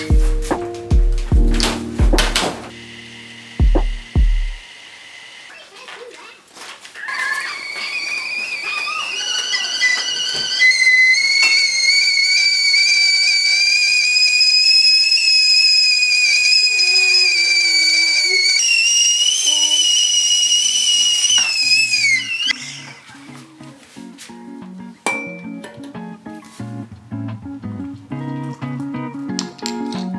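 Stainless steel stovetop whistling kettle whistling at the boil for about fifteen seconds. The steady high whistle creeps up in pitch, jumps to a higher note, then slides down and stops. Background music plays at the start and again near the end.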